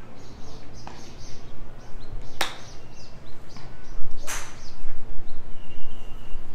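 A golf club chipping a ball off a driving-range hitting mat: one sharp click of the strike about two and a half seconds in, then a longer burst of noise a couple of seconds later. Birds chirp faintly in the background.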